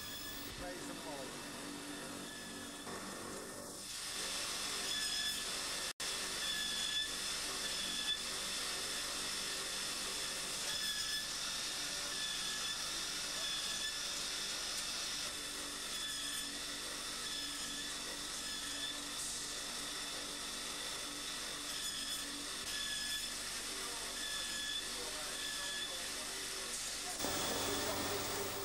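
Glazing wheel running as a steel sheep-shear blade is held against it: a steady hissing grind with a faint high whine, growing louder about four seconds in.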